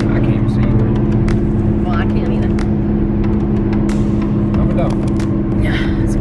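Steady cabin drone of a car driving at highway speed: low road and engine rumble with a steady hum, and a few light clicks and knocks.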